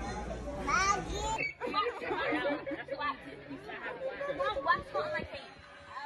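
Indistinct voices talking over one another. A low background hum stops abruptly about a second and a half in.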